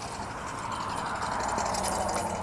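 A passing vehicle's rushing noise, swelling to a peak about midway and easing off, over a steady low rumble.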